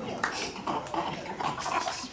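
Girls' voices talking indistinctly in short broken bursts.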